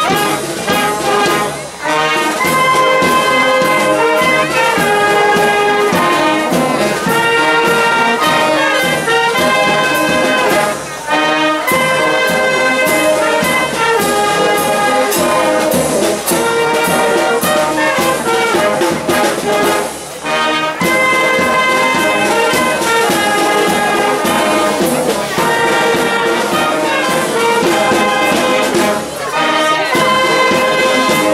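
Marching brass band playing a march, trumpets and trombones carrying the tune, with brief breaks between phrases about every nine seconds.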